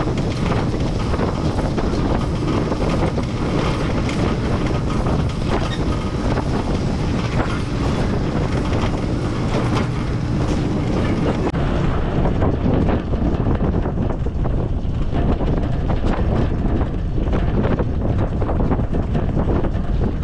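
Mahindra CJ3B jeep driving, heard from the open-top cabin: steady engine and road noise with frequent small rattles and knocks. The sound turns duller a little over halfway through.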